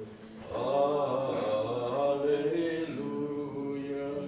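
Voices singing a slow, chant-like sung line. There is a short pause at the start, and the next phrase begins about half a second in and carries on through the rest.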